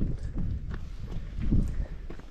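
Footsteps on a stony dirt mountain trail, a steady walking rhythm of about two to three steps a second.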